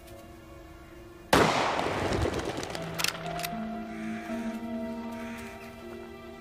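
A single rifle shot about a second in, with a long echoing tail, over background music of held notes. A couple of sharp clicks follow about three seconds in.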